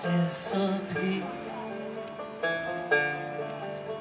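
Banjo picking a short instrumental passage between sung lines, separate plucked notes ringing and decaying.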